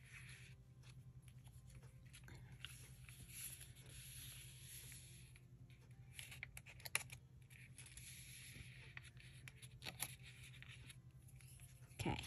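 Faint rustle and scrape of paper as hands press and smooth a glued paper flap onto a journal page, with a few light taps in the middle and again about ten seconds in, over a steady low hum.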